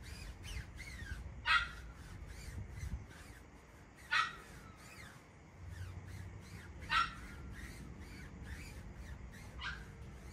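An animal calling four times at even intervals, about three seconds apart, over faint high chirping.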